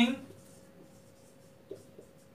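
Marker pen writing on a whiteboard: faint scratching strokes, with one short mark about three-quarters of the way through.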